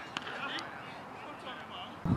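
Faint voices of men talking and calling out on an open field, with a short sharp knock about a fifth of a second in.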